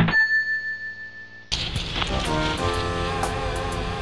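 A bright electronic chime sound effect rings at the start and fades away over about a second and a half. Then held music tones come in over a steady hiss.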